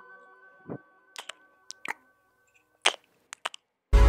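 Sharp, scattered clicks and taps of felt-tip marker caps and a plastic ruler being handled on a wooden table, about nine in all, over faint music that fades out. Loud music starts just before the end.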